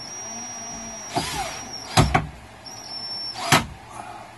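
Cordless drill-driver running in two spells with a steady high whine as it drives screws through a metal strut bracket into a plywood bed platform, broken by a few sharp knocks, the loudest about two seconds in.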